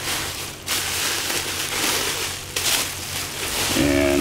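Plastic and paper packing rustling and crinkling as a latex mask hood is pulled out and handled, with a few louder crackles.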